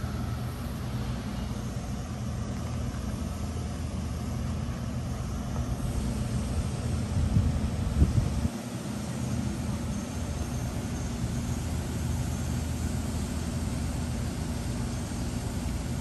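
A vehicle engine idling with a steady low rumble. There is a short knock about eight seconds in, and the rumble dips for a moment just after it.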